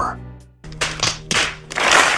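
A held music note fades away, then a crowd's applause builds from just over half a second in and grows louder toward the end, over faint background music.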